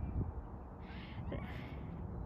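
A bird giving a few short harsh calls, a little under a second apart, over a steady low rumble.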